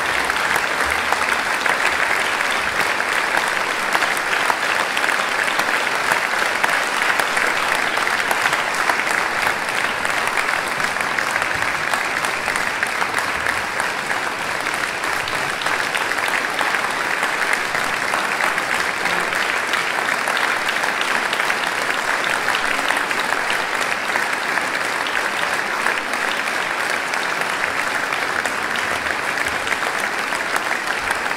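A large audience applauding steadily, a dense, even clapping that does not let up.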